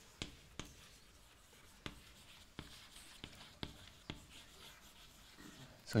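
Chalk writing on a blackboard: a string of faint, sharp taps and short scratches as the chalk strikes and drags across the board, irregularly spaced.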